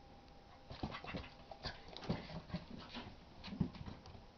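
Two young dogs, a bulldog puppy and a Basset Hound x Pug, play-fighting: short dog vocalisations and scuffles in quick succession from about a second in, the loudest near the end.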